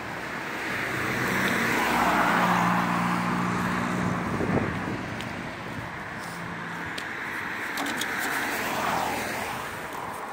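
Road traffic passing close by: one car swells up and goes past about two seconds in, another passes near the end, with a low engine hum underneath. A single sharp knock comes about halfway through.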